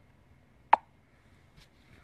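A single short, sharp pop about three-quarters of a second in, followed by a much fainter click.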